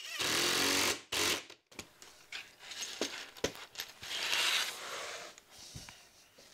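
Cordless drill driving a wood screw into a plywood stick, running hard for about a second, then a second short burst as the screw is run home. After that come softer clicks and rubbing as the drill is set down and the wood pieces are handled.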